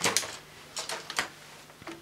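Plastic vacuum-cleaner wand and hose being picked up and handled: a few light knocks and clicks.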